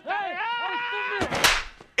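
A hard slap to a man's face: a single sharp crack about one and a half seconds in, following a short stretch of voice.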